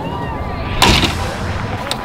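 A single loud bang about a second in, over a steady low rumble.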